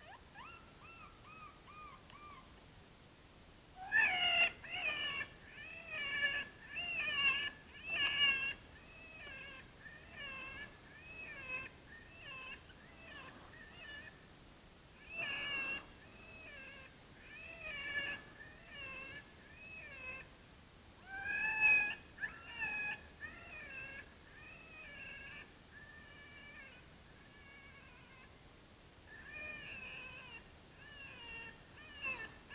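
Electronic predator call playing an animal distress sound meant to lure coyotes: repeated high, wavering cries that come in bursts with short pauses between them.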